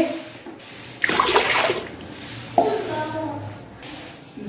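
Water poured from a glass into a metal pressure cooker: one short splashing rush about a second in, lasting under a second.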